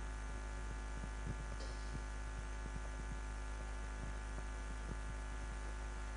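Steady electrical mains hum from a microphone and PA sound system, with a few faint, irregular clicks.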